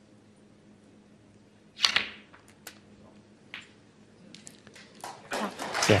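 A snooker cue strikes the cue ball, played off a cross rest, with a sharp click about two seconds in, followed by a few lighter clicks of balls meeting. Audience applause starts and builds near the end as the red is potted.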